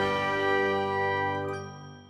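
The closing chord of a short outro music jingle, with bell-like tones ringing on and fading away near the end.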